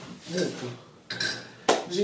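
Kitchenware clattering as it is handled, with a sharp clink just past a second in and a louder knock near the end.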